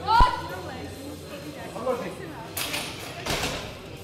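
Shouts of encouragement during a competition bench press attempt, with a short thump just after the start. Two brief noisy bursts follow near the end.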